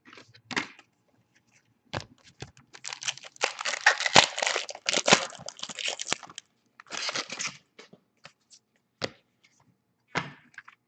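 The foil wrapper of a trading-card pack being torn open and crinkled by hand. A run of crackling rustles starts about two seconds in and is strongest in the middle, with a shorter burst about seven seconds in and a few light clicks between.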